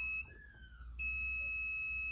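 Digital multimeter's continuity beeper, with its probes across motherboard capacitors: a steady high-pitched beep ends just after the start and a second one begins about a second in. Each beep signals a direct connection, a capacitor dead short to ground.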